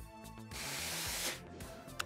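A mini steam iron gives a short hiss of steam, just under a second long, starting suddenly about half a second in, over quiet background music.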